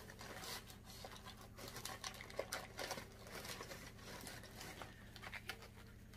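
Faint rustling and crinkling of shopping bags and packaging being rummaged through, with many small scattered clicks and crackles.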